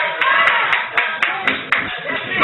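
Congregation clapping in a steady rhythm, about four claps a second, with voices calling out over it.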